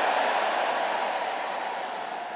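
A steady, even hiss of background noise with no distinct events, slowly fading.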